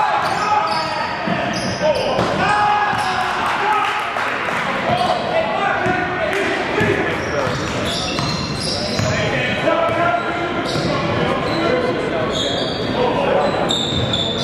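Basketball game play on a hardwood gym court: a ball dribbling and bouncing, with indistinct shouts and calls from players, echoing in a large hall.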